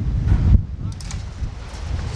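Strong wind buffeting the microphone in gusts, a low rumble that peaks about half a second in.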